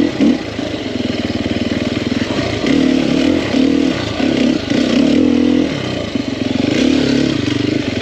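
Engine of a 2021 Sherco 300 SEF, a single-cylinder four-stroke dirt bike, running under load on a rocky trail. The throttle is worked on and off, so the engine note swells in short bursts through the middle and again near the end.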